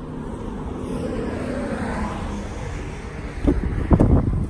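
A passing vehicle on the road with low wind rumble on the microphone, its sound swelling and fading through the middle; near the end, two sharp knocks as the pickup truck's driver door is opened.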